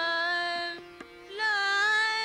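Hindustani khayal in Raga Nand, slow vilambit in Tintaal. A female voice holds one long note, eases off briefly a little before halfway, then holds a higher note, shadowed by harmonium and drone. Sparse soft tabla strokes sound beneath.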